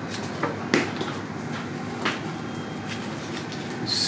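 Flower stems and foliage being handled in a glass vase: a few short sharp clicks and rustles, the loudest about three-quarters of a second in, over a steady room hum.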